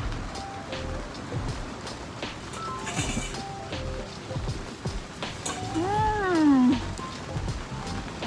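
Background music with short, spaced notes, and about six seconds in one long "mmm" hummed with the mouth full, rising then falling in pitch: a sound of enjoyment while chewing a burger.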